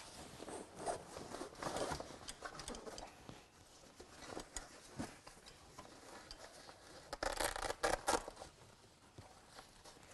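Hook-and-loop (Velcro) straps of a fabric cupboard being wrapped around a camping table's aluminium frame and pressed shut: short rasping rips with fabric rustling, the loudest cluster about seven to eight seconds in.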